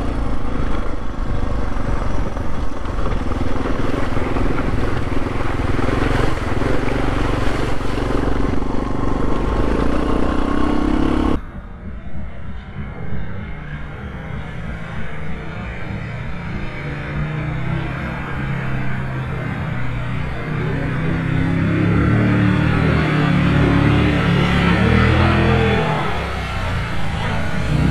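Dual-sport motorcycle engine running under way on a gravel track, with wind on the helmet-mounted microphone. After a sudden cut about eleven seconds in, a quieter scene where a motorcycle approaches through a shallow river, its engine rising in pitch and level as it nears.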